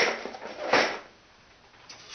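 A cardboard box of four-inch nails being handled and set down on a table: a short noisy burst at the start and another about three-quarters of a second in.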